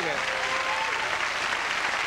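Studio audience applauding steadily, with a man's voice faintly over it.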